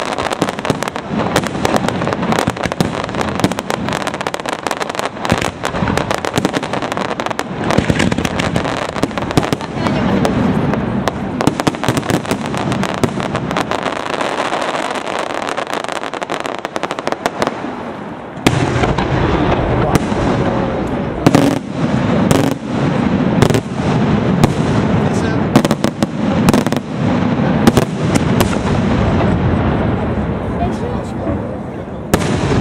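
A dense aerial fireworks barrage by Pirotecnia Valenciana: a continuous run of rapid crackling pops and bangs. From a little after halfway the bursts grow heavier, with louder, deeper booms.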